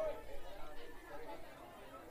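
Indistinct chatter of people talking, loudest at the start and fading within the first second and a half.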